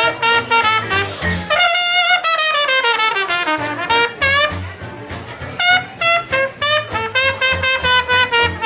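Cornet solo in a traditional jazz band, over a rhythm section keeping a steady beat. About two seconds in, the cornet bends down in a long falling slide.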